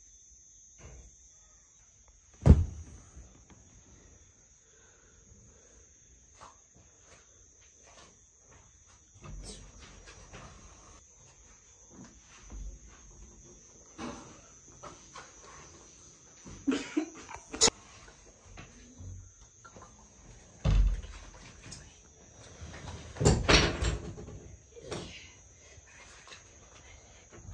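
Crickets chirping steadily at night, with scattered knocks and bumps of movement, the sharpest single knock about two and a half seconds in and a cluster of thuds near the end.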